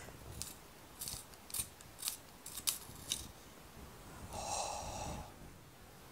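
Jakar Trio handheld pencil sharpener's blade shaving the wood of a coloured pencil as it is twisted by hand: a series of short scraping crunches, then a longer rasp about four and a half seconds in.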